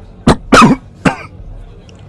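A man coughing: three short, loud coughs in quick succession, the middle one the longest.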